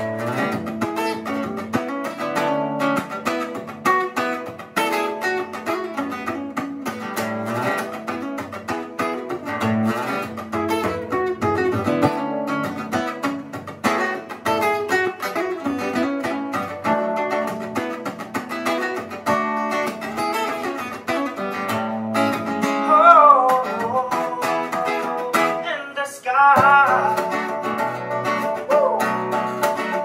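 Acoustic guitar and electric keyboard playing a song together live, the guitar plucked and strummed over sustained keyboard notes.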